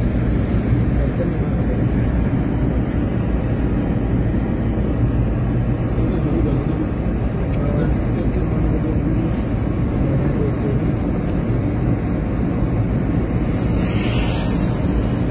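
Steady low road-and-engine rumble of a car travelling at highway speed, heard from inside the moving vehicle.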